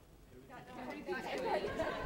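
Speech only: several voices talking over one another, starting about half a second in and growing louder.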